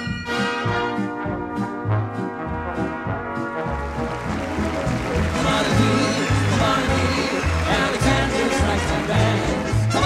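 Brass-led show-band music: held brass chords for the first few seconds, then a livelier swing number with a steady bass beat starts about four seconds in.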